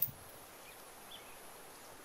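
Faint outdoor background with a couple of tiny high chirps, after a single short knock right at the start.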